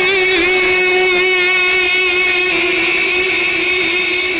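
A man's voice holding one long sung note through a microphone, in a chanted recitation of Punjabi Sufi poetry. The note wavers slightly at first, then holds steady.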